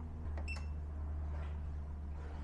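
A button click and a single short electronic beep from an ALLPOWERS R1500 portable power station about half a second in, as its AC output is switched back on after an overload shutdown, over a steady low hum.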